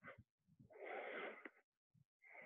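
A man breathing hard from the effort of push-ups: a short breath at the start, then a longer breath of about a second, both faint.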